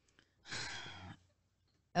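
A person's single breathy sigh, an exhale lasting under a second, picked up faintly by a close microphone.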